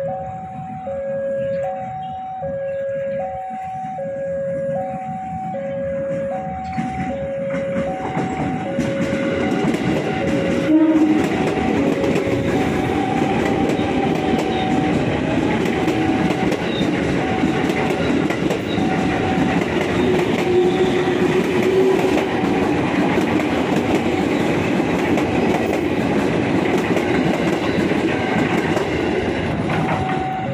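A KRL Commuter Line electric train, with stainless-steel cars, passing close by. Its rumble and rattle build from about seven seconds in, peak around eleven seconds and stay loud to the end. Throughout, an electronic warning alarm keeps alternating between a lower and a higher note, typical of a railway level-crossing signal.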